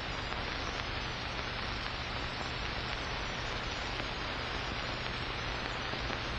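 Steady hiss with a low, even hum from an old kinescope film soundtrack, with no programme sound over it.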